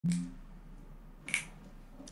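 A single short, sharp click about a second in, over a faint low hum, after a brief low-pitched blip at the very start.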